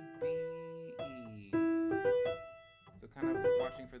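Piano keyboard played one note at a time: the right-hand melody of an E minor scale passage moving into skips. There are single notes about half a second apart, each dying away, and a quicker run of notes near the end.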